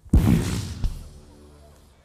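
A sudden loud explosion-like boom standing for the sonic boom of breaking the sound barrier. It fades away over about a second and a half, with a second sharp crack just under a second in.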